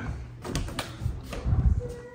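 Interior door being opened: a few sharp clicks and knocks from its latch and handle, with a louder cluster of low thumps about a second and a half in.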